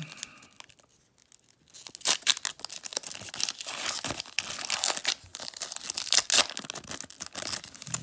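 Foil wrapper of a trading-card pack being torn open and crinkled by hand: after a quiet start, a dense crackling begins about two seconds in and goes on to the end.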